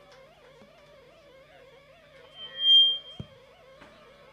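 A short, high, steady whistle-like tone about two and a half seconds in, the loudest sound, followed at once by a dull low thump, over a faint wavering drone.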